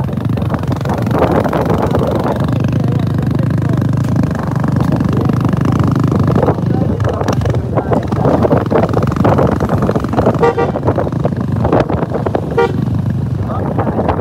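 Motorcycle engine running steadily while riding along a road, with wind on the microphone. Two short buzzy horn beeps sound about ten and twelve and a half seconds in.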